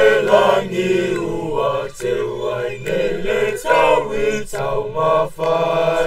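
A choir of voices singing in harmony, holding long notes phrase after phrase, with short breaks between the phrases.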